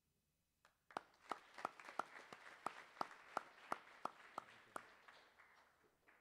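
Audience applause in a hall, with one pair of hands near the microphone clapping evenly about three times a second over the crowd's clapping. It starts about a second in and fades out near the end.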